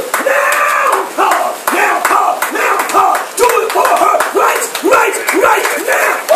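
Loud, excited shouting and wordless exclamations of ecstatic revival prayer, with voices rising and falling in pitch. Sharp clapping sounds run through it.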